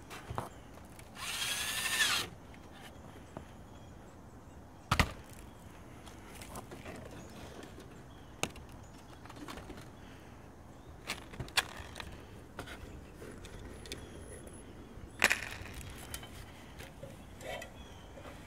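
Cordless drill running for about a second, a whine that rises and falls in pitch, typical of a screw being driven. It is followed by scattered sharp knocks and clicks as the wire-mesh squirrel exclusion tunnel and mesh are handled and fastened at the roof edge.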